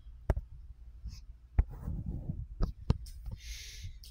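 Four short, sharp taps spaced unevenly, from fingers on a phone's touchscreen as the app is navigated, then a short breath drawn in near the end.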